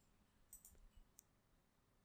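Near silence: room tone, with a few faint, short clicks between about half a second and a second in.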